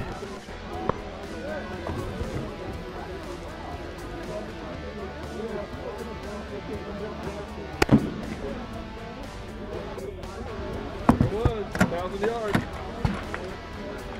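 A single shot from a Savage BA bolt-action rifle chambered in .338 Lapua Magnum, sharp and much louder than everything else, about eight seconds in, fired at a 1,000-yard target. A few lighter clicks and knocks follow near the end, over steady background music.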